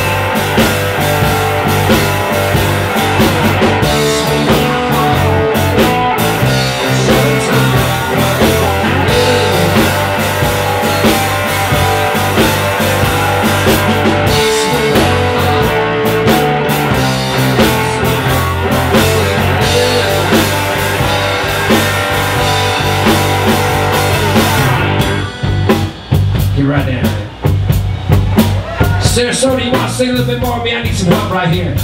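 Live electric blues band playing an instrumental passage: box-bodied electric guitar over bass guitar and drum kit. About 25 seconds in, the full band drops out to a sparser, quieter stretch.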